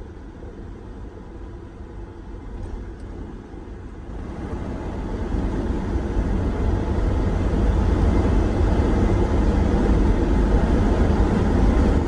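Steady engine and road noise heard from inside a moving vehicle's cab, mostly a low rumble. It grows louder about four seconds in and stays at that level.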